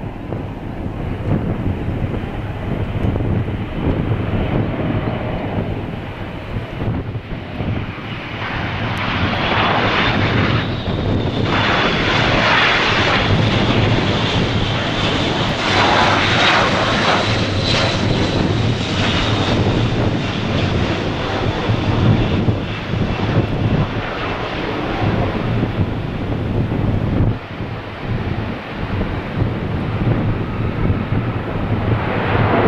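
Airbus A400M's four turboprop engines with eight-bladed propellers on landing approach, gear down. The steady engine noise grows, with a high turbine whine coming in about a third of the way through. It is loudest through the middle as the aircraft passes, then eases as it comes down onto the runway.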